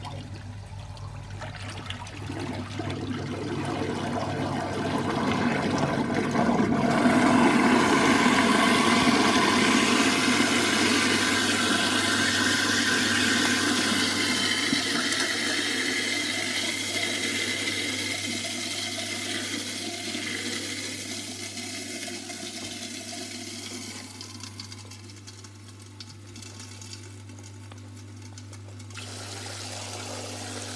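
Water rushing and swirling down a kitchen sink drain through an InSinkErator garbage disposal, building to its loudest a quarter of the way in and then fading, over a steady low hum from the disposal's running motor.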